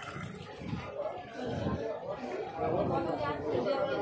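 Indistinct voices of several people talking, a murmur of chatter with no clear words, growing louder towards the end.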